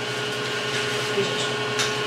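Kitchen range hood extractor fan running with a steady hum over a hiss. A single light click comes near the end.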